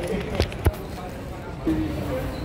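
Background voices in a busy shop, with two sharp clicks of a phone being handled about half a second in. A voice starts up near the end.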